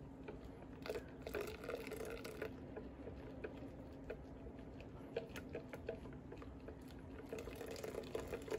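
Hot milky eggnog base trickling from a ladle into a glass bowl of eggs while a silicone whisk stirs in the bowl, faint pouring and soft ticks, as the eggs are tempered. A faint steady hum runs underneath.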